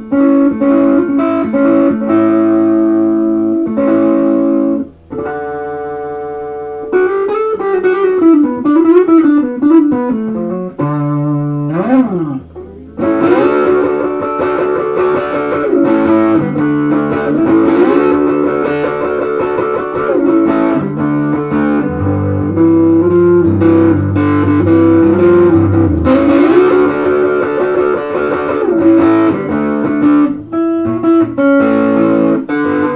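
Peerless ES-345 semi-hollow electric guitar played through a distorted amp: a few seconds of repeated chords, then a held note with string bends and vibrato, then a long run of busy lead licks.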